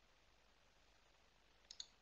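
Two quick clicks of a computer mouse button, a fraction of a second apart near the end, over near-silent room tone.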